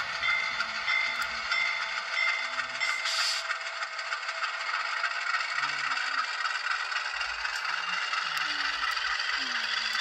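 Bowser U25B model diesel locomotive running slowly along the track: a steady mechanical rattle and whir from its drive and wheels, mixed with its sound decoder's engine sound. A faint ringing repeats about twice a second for the first couple of seconds.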